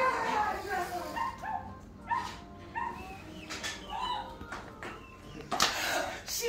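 Pet hens making a string of short, pitched clucking calls, with a brief burst of noise near the end.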